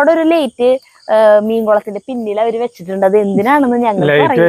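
A woman's voice close to the microphone, with some long held pitches. Behind it, crickets give a steady high trill.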